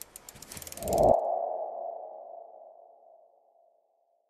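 Logo-animation sound effect: a quick run of soft ticks, then a single ping about a second in that rings on and fades away over about two seconds.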